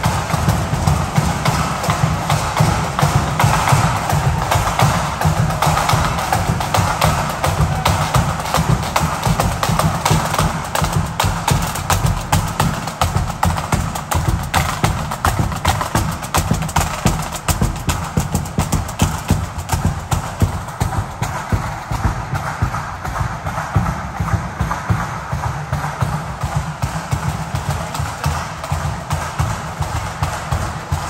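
Marching band drummers playing snare drums and a bass drum in a fast, steady cadence of dense, even strokes.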